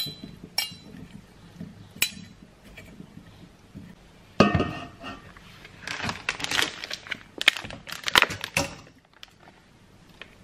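Metal spoons clinking against a pan as a salad is tossed, a few separate clinks in the first two seconds. About four and a half seconds in comes a loud knock from an air fryer basket being handled, then a few seconds of clattering and scraping as raw chicken is slid off a plastic cutting board into the basket.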